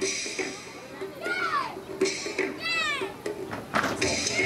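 Two high-pitched cries, each falling steeply in pitch, about a second and a half apart, over quiet rhythmic background music. A sharp, loud hit comes just before the end.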